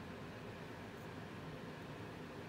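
Steady low background hiss of room tone, with no distinct sound standing out.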